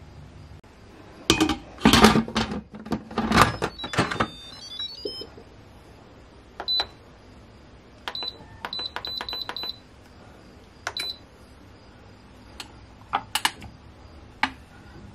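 Nutricook electric pressure cooker being closed and set: loud clattering knocks as the lid goes on, a short falling run of tones, then the control panel beeping as buttons are pressed to set the cooking time, a single beep, a quick run of about six beeps and another single beep. A few clicks near the end as the lid and pressure valve are handled.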